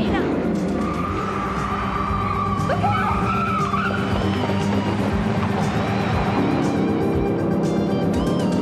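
A car's tyres squealing for about three seconds in the first half, over steady background music.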